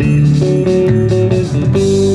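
Live band playing an instrumental fill between sung lines: pedal steel guitar and electric guitar holding notes over electric bass and a steady drum beat.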